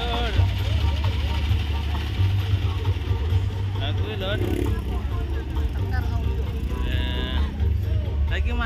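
Heavy, continuous bass of music from a large horeg street sound system (truck-mounted speaker stacks), with a crowd's voices over it.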